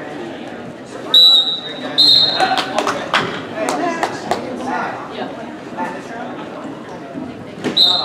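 Wrestling referee's whistle: two short, shrill blasts about a second and two seconds in, stopping the action, then another blast near the end as the wrestlers face off in neutral to restart. Voices from the gym carry underneath.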